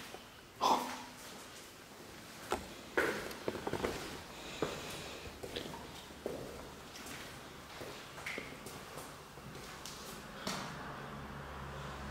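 Irregular footsteps and small knocks on a hard floor as someone walks slowly through an empty room.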